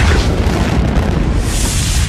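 Explosion sound effect: a loud, deep, rumbling blast that continues throughout, with a brighter hiss swelling near the end.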